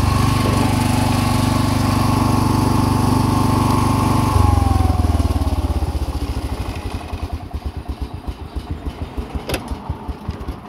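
Wheel Horse lawn tractor engine running steadily under way. About four seconds in, its note drops, a whine falls in pitch, and the engine slows to slow, separate firing pulses as it stalls, the result of a faulty carburettor. A single click comes near the end.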